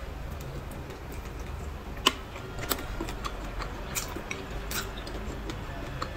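Close-miked chewing of braised pig's trotter: scattered small wet clicks and smacks from the mouth, the sharpest about two seconds in.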